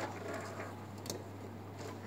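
Quiet room with a low steady hum and a few faint clicks and rustles of fabric being handled at a sewing machine; the machine itself is not stitching.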